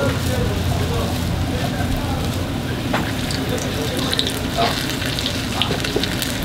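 Hotteok pancakes shallow-frying in a tray of hot oil, a steady sizzle over a low hum, with a few faint clicks.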